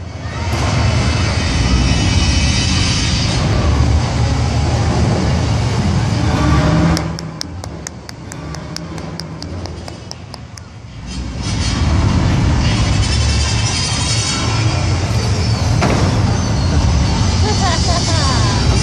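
Heavy machinery engine running loud with a deep rumble, easing off for a few seconds midway with a quick run of clicks, then loud again.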